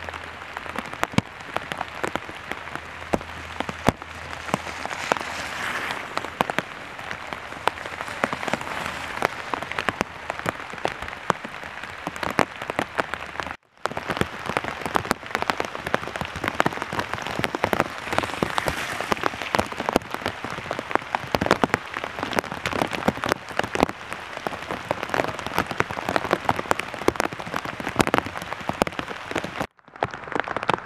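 Rain falling on wet leaves and ground: a dense, steady crackle of drops, cutting out briefly twice.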